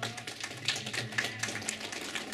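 A woman singing a traditional song, holding a steady low note, with a dense run of rapid dry clicks over it.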